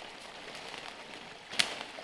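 Dry leaf litter and brush rustling as a thin bamboo stem is handled and bent, with one sharp crack about a second and a half in.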